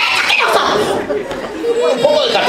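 Indistinct voices talking and chattering, with no clear words.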